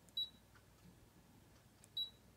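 Two short high beeps from a Brother ScanNCut digital cutter's touchscreen as its buttons are tapped, one just after the start and one near the end.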